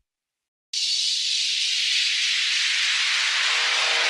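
A moment of silence, then a steady hiss like static or white noise comes in and slowly fills out toward deeper tones: the noise intro of an emo-rap track.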